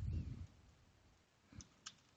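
A few sharp computer-keyboard keystrokes, about a second and a half in, as a command is typed into a router terminal. A short, low muffled sound comes right at the start and is the loudest thing heard.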